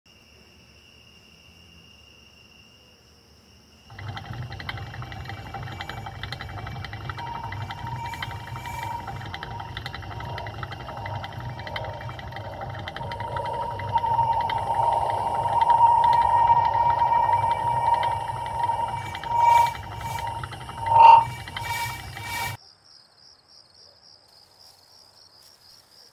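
Hamster exercise wheel spinning as the hamster runs: a continuous rattling whir with a squeal that grows louder toward the middle. It stops abruptly near the end, leaving only a faint high whine.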